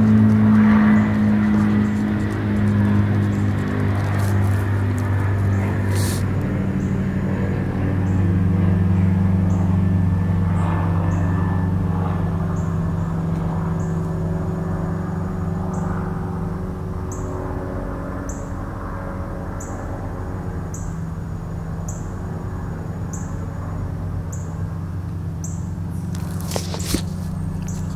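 A steady low engine drone, fairly loud throughout, with a bird's short high chirp repeating about once a second from partway in.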